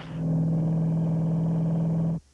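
Steady car engine drone held at one constant pitch, as from inside a moving car. It comes in sharply at the start.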